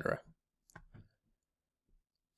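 The end of a spoken word, then a few faint clicks about a second in, from a computer mouse as the code on screen is scrolled.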